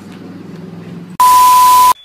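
A faint low steady hum, then a little over a second in a sudden, very loud electronic bleep: one steady tone over a hiss, lasting under a second and cutting off abruptly.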